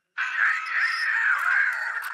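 A harsh, screeching cry that starts abruptly and holds for about two seconds, from the anime's soundtrack.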